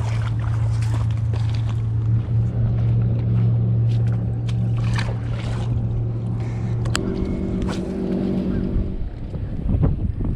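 A motorboat engine droning steadily across the water; its note shifts about seven seconds in and fades near the end. Scattered sharp clicks and knocks from handling sound over it.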